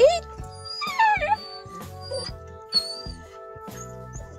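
A Scottish terrier whining: a falling whine about a second in, then thin high squeaky whines, over background music with steady held tones. The dogs are crying, impatient to be let out of the car.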